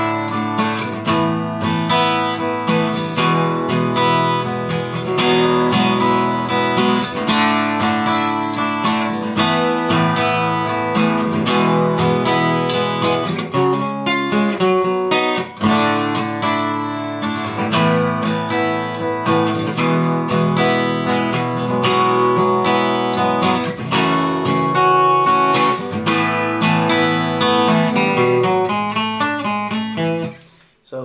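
Steel-string acoustic guitar played solo and without pause: strummed chords mixed with picked single-note runs, going through a song's verse chord progression, with one brief dip about halfway through.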